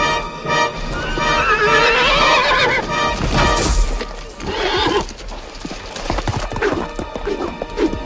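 A horse whinnying as it rears: one long wavering whinny about a second in and a shorter one at around four and a half seconds, followed by a run of hoof thuds. A film music score plays underneath.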